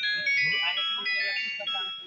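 A simple electronic tune of high, clear beeping notes stepping up and down in pitch, with voices talking underneath.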